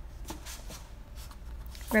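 A hand brushing and shifting books on a shelf: soft rustling with a few light taps spread through the pause.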